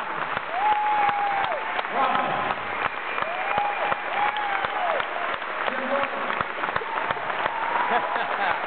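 Concert audience applauding, with many hands clapping at once. Over the clapping come several long calls that rise and fall in pitch, whoops or whistles from the crowd.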